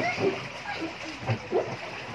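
Water splashing and sloshing in an inflatable paddling pool as children move about in it, with a child's short laugh just over a second in.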